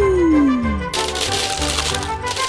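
Background music with a beat, over which a single tone glides downward. About a second in, a dense rattle starts: small hard candy-coated chocolates sliding and pouring out of a large glass.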